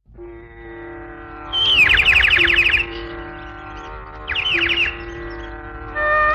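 Opening of a Malayalam film song: a steady held chord, with two runs of quick, falling bird-like chirps, the first about a second and a half in and the second around four seconds in.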